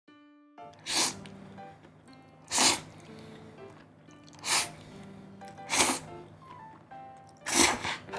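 Yakisoba noodles being slurped in five short, loud bursts, about one every one and a half seconds, over soft background music.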